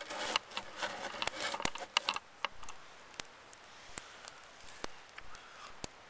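Wood campfire crackling: single sharp pops at uneven intervals, spaced roughly a second apart, over a quiet background. Rustling and handling noise during the first two seconds.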